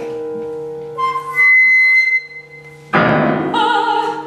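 Contemporary chamber music for soprano, flute and piano played live: held notes, a high sustained tone about a second in, then a sudden loud entry near the end with the soprano singing with vibrato.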